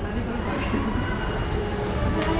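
Steady mechanical rumble with several faint, steady high-pitched whining tones above it, from machinery in a metro station passage.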